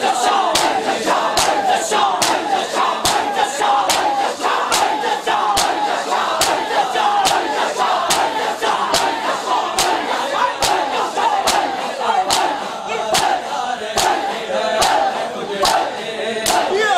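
Crowd of mourners doing matam, beating their chests in unison with a sharp slap about twice a second, under loud massed voices chanting.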